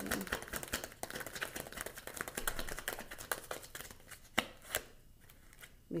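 A tarot deck being shuffled by hand: a fast run of small card clicks that thins out about four and a half seconds in, ending with two sharper snaps, then it goes quieter.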